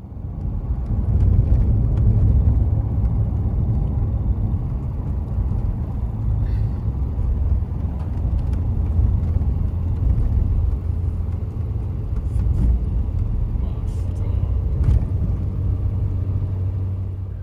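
Steady low rumble of a car's engine and tyres on the road, heard from inside the cabin, with a few faint ticks.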